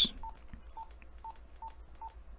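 Wouxun KG-935G handheld GMRS radio beeping once for each press of its menu scroll key: four short, identical beeps, each with a faint button click, about two a second, as it steps through the menu items.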